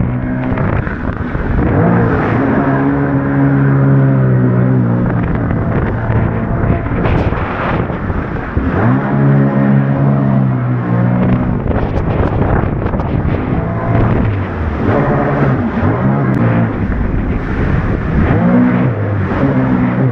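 Sea-Doo Spark Trixx jet ski's three-cylinder Rotax engine running hard, its pitch rising and falling again and again as the throttle is worked through tight carving turns. The rush of water spray runs over it.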